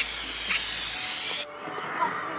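A steady, loud hiss of noise that cuts off abruptly about one and a half seconds in.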